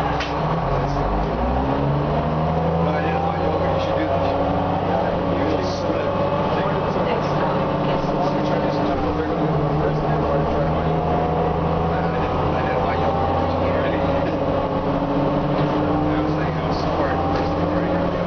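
Cummins M11 diesel engine and Allison B400R automatic transmission of an Orion V transit bus, heard inside the passenger cabin. The engine note rises about a second in as the bus pulls away, then runs steady with a few shifts in pitch, under passengers' chatter.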